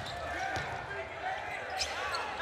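A basketball being dribbled on a hardwood court, a few faint bounces over the low murmur of an arena crowd.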